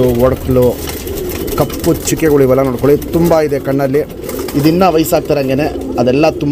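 Domestic pigeons cooing, a continuous run of low, wavering coos.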